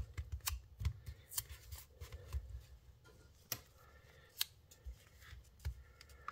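Fingers pressing and smoothing masking tape onto a plastic model hull: faint rubbing and handling with scattered small clicks and taps, two sharper ticks in the middle.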